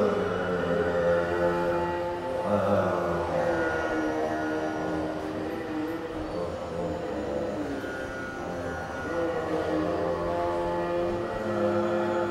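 Carnatic alapana in raga Hindolam: a slow, unmetered melodic line of long held notes joined by sliding glides, with no percussion.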